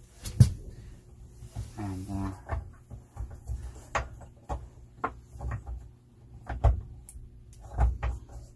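Irregular clicks and knocks from the Lagun table mount's clamp lever and push button being worked by hand, with the sharpest knock about half a second in.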